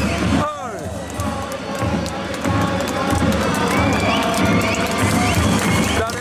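Football supporters chanting in unison, a crowd of voices singing over a steady drum beat of about two strokes a second.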